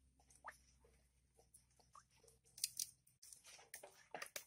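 Faint, scattered wet clicks and squelches of a hand handling raw offal in a plastic colander, with a louder cluster of clicks about two and a half seconds in.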